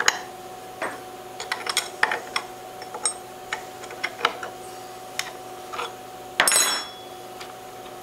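Small metal clicks and taps as the bit and collet nut of a CNC router's spindle are handled by hand during a tool change, over a faint steady hum. Near the end comes one louder rush of noise lasting about half a second.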